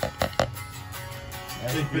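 Wooden drumsticks tapping an Evans RealFeel rubber practice pad, three quick dull strokes in the first half second, over background music.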